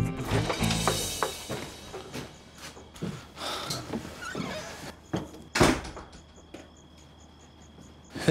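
Background music fading out in the first second, then a few soft knocks and rustles and a single sharp thunk about five and a half seconds in, a door banging shut.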